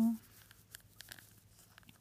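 Faint crinkling and a few small ticks of fingers picking at a CD packet's wrapping, trying to tear it open.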